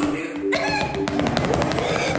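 Quick run of drumstick strikes on a homemade drum made from a duct-taped box, with the hip-hop backing track of the song playing underneath.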